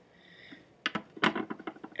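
Small scissors snipping pheasant tail fibers at a fly-tying vise: a few sharp clicks starting a little under a second in.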